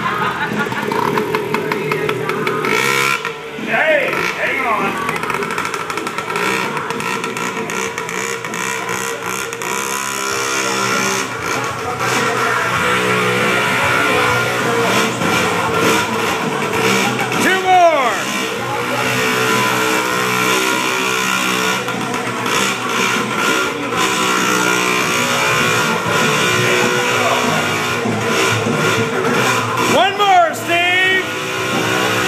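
A kick-started mini bike's small petrol engine running, its revs rising and falling a few times as it is ridden, with rock music playing over it.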